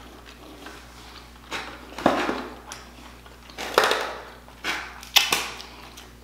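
Close-miked chewing and mouth smacks of someone eating sauce-coated seafood, in about five short bursts spread over the few seconds.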